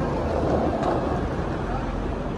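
Busy city street ambience: a steady low traffic rumble with the voices of passers-by.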